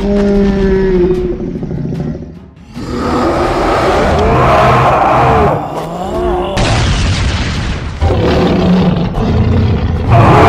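Cartoon fight soundtrack: background music mixed with heavy boom-like impact sound effects and pitched, gliding vocal cries. The sound drops away briefly about two and a half seconds in, then comes back at full level.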